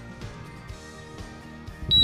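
Soft background music with sustained notes; near the end, a short, loud electronic chime of high beeps stepping down in pitch, with a low rumble under it: the DJI Mavic Mini remote controller powering off.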